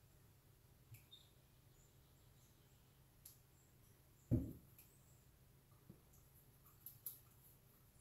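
Near silence: quiet room tone with a few faint clicks and one short, dull knock about four seconds in, from a plastic bottle and cup being handled on a kitchen countertop while cream is poured.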